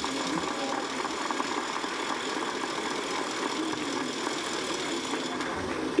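A large audience applauding with steady, dense clapping, which stops near the end as the speech resumes.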